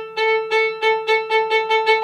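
Violin playing short, separate bow strokes on one repeated note, about five a second and getting quicker: a slow spiccato practice stroke, the bow dropped onto the string and drawn briefly across it, being sped up toward a real spiccato.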